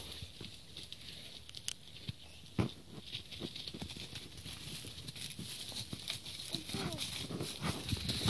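Quiet rustling in dry leaves and scattered light knocks from a small child clambering over a fallen log, with one sharper thud about two and a half seconds in. A faint voice is heard near the end.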